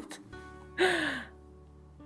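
A woman's short breathy laugh, falling in pitch, about a second in, over faint background music.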